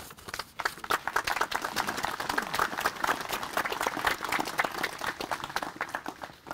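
Audience applauding. The clapping swells about half a second in, holds dense and steady, then thins out near the end.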